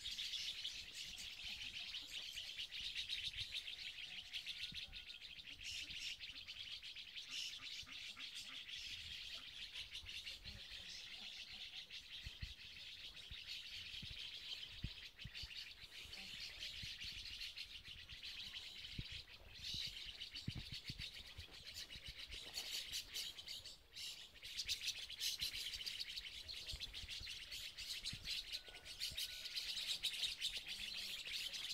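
Many small birds chirping densely and without a break, with a low rumble underneath.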